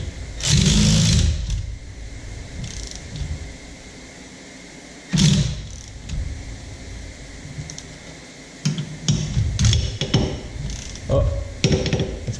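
Cordless electric ratchet running in short bursts, turning a bolt threaded into a rear brake drum's puller hole to force the rusted-on drum off the hub. One burst of about a second comes early, another about halfway, and a cluster of shorter ones near the end.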